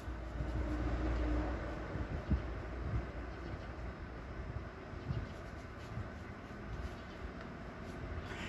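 Faint low rumble over quiet background noise, strongest in the first two seconds and then fading.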